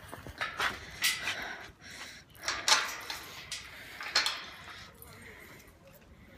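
Keys and a metal chain and padlock clinking and knocking on a steel gate as it is unlocked: a few sharp clicks and knocks, the loudest a little under three seconds in.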